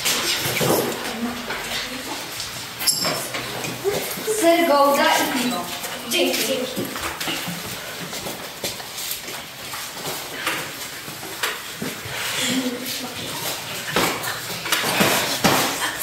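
Indistinct voices talking and murmuring, loudest a few seconds in, with scattered light knocks and clatter.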